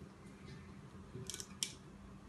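A cork being pulled straight up out of the neck of a 15-litre Nebuchadnezzar wine bottle, giving a few short, sharp squeaks against the glass about a second and a half in, over a quiet background.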